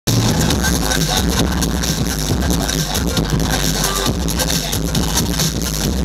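Loud breakbeat DJ mix played over a club sound system, with a steady driving beat and heavy bass.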